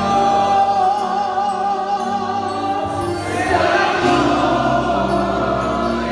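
Church congregation singing a worship song together, many voices holding long notes in a hall.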